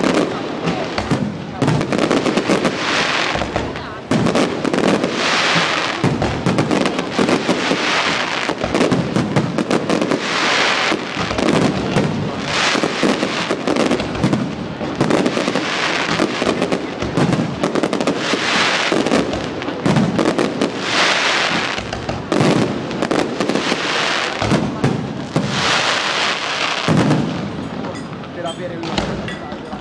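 Aerial fireworks display: a dense run of sharp shell bangs with no let-up, and a burst of crackling stars every couple of seconds.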